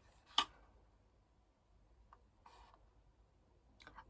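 Quiet handling of a cardboard box and a foil pouch: one short sharp crinkle about half a second in, then a tiny click and a faint brief rustle a little past two seconds.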